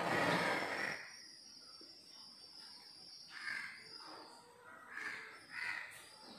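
A spoon scraping and moving pudding in a glass dish, a short burst in the first second, followed by faint room sound with a few soft short noises.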